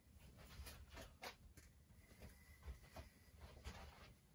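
Near silence: room tone with a few faint rustles and soft knocks as a flat board is handled and carried to a door frame.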